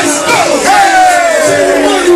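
A man's long, drawn-out shout into a microphone, falling slightly in pitch, over a hip hop beat.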